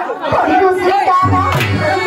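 Performers' voices talking over stage microphones, with a low drum beat coming in a little over a second in as the musical accompaniment starts.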